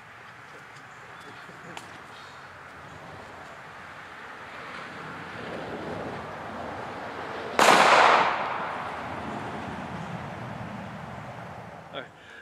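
A single .380 pistol shot about seven and a half seconds in: one sharp report with a short echoing tail.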